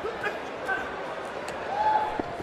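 Boxing arena ambience: crowd noise and shouts from around the ring, with a few sharp slaps of gloves landing as the boxers exchange at close range.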